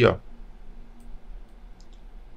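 Two faint computer mouse clicks, about a second in and again near the end, over a quiet room hum.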